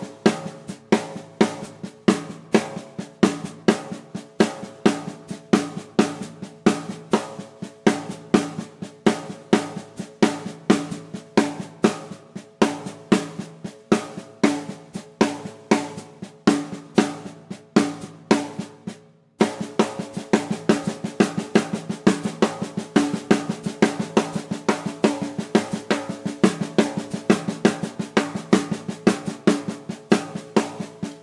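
Left hand playing steady sixteenth notes on a snare drum: quiet ghost notes broken by loud accented rim shots in a repeating five-note grouping with two accents. About two-thirds of the way in it stops briefly and starts again at a faster tempo.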